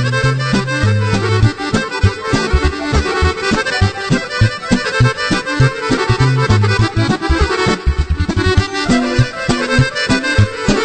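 Instrumental break of a Serbian folk song: an accordion plays the lead over a bass line and a steady beat, with no singing.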